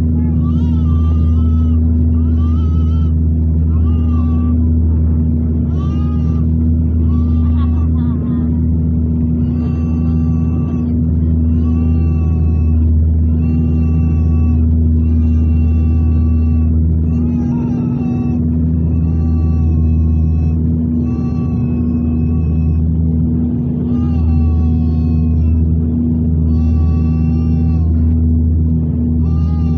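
Steady low drone of a turboprop airliner's engines and propellers heard inside the cabin during descent. High pitched phrases, a voice or melody, repeat about every second or two over it.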